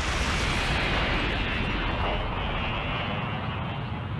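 Cartoon explosion sound effect as a truck is blown apart: a long, dense rumbling blast that slowly dies away, thinning out near the end.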